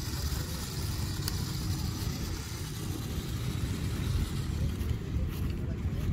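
Wind buffeting the microphone outdoors, a rough, uneven low rumble throughout.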